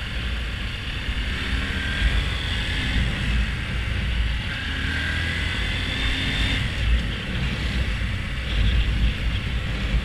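Honda Grom's 125 cc single-cylinder engine running under way, its pitch climbing, easing off and climbing again before dropping about seven seconds in. A low rumble of wind buffets the microphone throughout.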